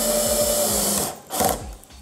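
Cordless drill-driver running steadily as it drives a wood screw into a pine board, the motor stopping about a second in. A short burst of sound follows soon after.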